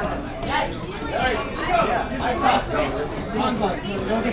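Chatter of many people talking at once in a crowded bar room, overlapping voices with no single clear speaker.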